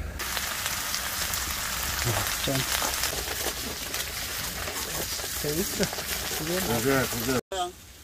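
Pork belly and onion slices sizzling on a round griddle pan over a portable gas stove: a steady, dense frying hiss that cuts off suddenly near the end.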